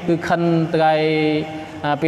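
A man's voice in melodic, chanted recitation: a few short syllables, then one long note held steady for most of a second.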